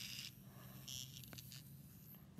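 Quiet handling of a small plastic toy: two brief faint rustles and a light tick over a low, steady hum.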